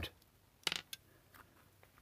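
A few small hard clicks and taps from a screwdriver and the plastic housing of a steering-wheel clock-spring module being handled as its cover is unscrewed, the loudest about two-thirds of a second in, the rest faint.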